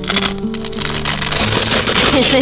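Background music with steady held notes, over a dense crinkling crackle of a clear vinyl yurt window sheet being handled.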